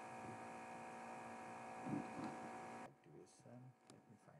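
Steady electrical mains hum, several steady tones at once, that cuts off suddenly about three seconds in, followed by a couple of faint clicks.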